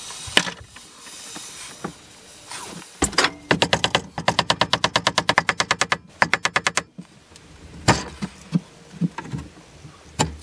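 Hammer tapping the end of a wooden handle in a fast, even run of sharp knocks lasting about three seconds, driving it onto the billhook's hot tang. A few single knocks follow near the end, and a soft hiss comes before the hammering as the hot tang scorches into the wood.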